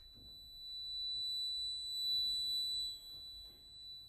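A single very high, pure sustained note in a sparse passage of contemporary chamber music for flute, clarinet, violin, cello and accordion. It swells about a second in, is briefly joined by a second high tone just below it, and breaks off sharply shortly before the end.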